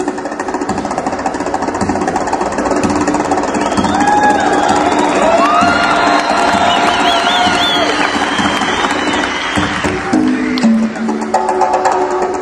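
Set of Latin Percussion congas played in a fast solo, a dense unbroken run of strokes. From about four seconds in, held and wavering cries rise over it for several seconds. Near the end, open tones step clearly between the drums again.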